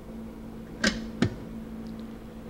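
Two light clicks of glass test tubes knocking as they are lifted out of a benchtop centrifuge's rotor, about half a second apart, over a steady low hum.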